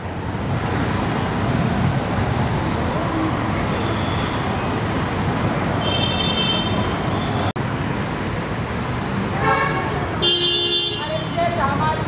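Steady road traffic noise with car horns honking, once about six seconds in and again near ten seconds.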